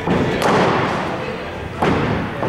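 Cricket ball thuds in an indoor net hall: one as the ball pitches on the matting at the start and another sharp one just before the end, each followed by the hall's echo.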